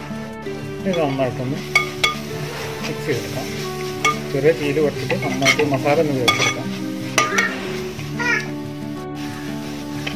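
A spatula stirring and scraping spice powders into frying onions and tomatoes in a metal pan, with sizzling and scattered sharp clicks of the spatula against the pan, over background music.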